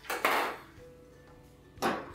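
A cut-open plastic soda bottle handled and set against the table, giving one short clatter of thin plastic that fades within half a second, over faint background music.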